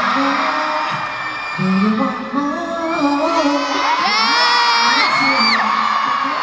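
Arena concert crowd screaming and cheering steadily, with a voice calling out or singing in long gliding notes over it; the loudest, longest call rises and falls from about three seconds in until near the end.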